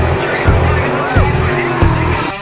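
Race cars running at speed on a dirt track, mixed under rock music with a steady drum beat; a brief rising-and-falling whine about a second in.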